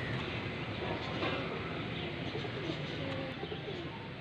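Domestic pigeons cooing, several short rising-and-falling coos over a steady outdoor background noise.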